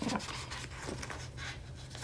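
Soft rustling and rubbing as a sheet of printable vinyl decal stickers is handled.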